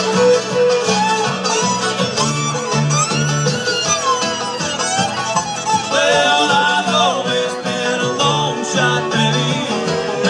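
Live bluegrass band playing: acoustic guitar, banjo and fiddle together, recorded from within the audience.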